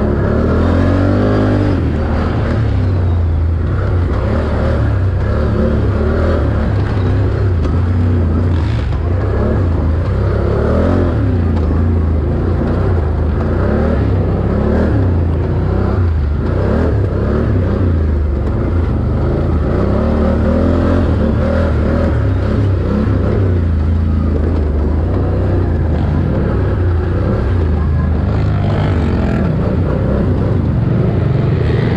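4x4 ATV engine running hard under a rider, its pitch rising and falling over and over with the throttle as it climbs and drops through a rough dirt and wooded trail.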